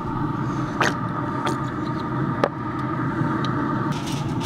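A steady mechanical hum, with three short sharp clicks: about a second in, at a second and a half, and near two and a half seconds.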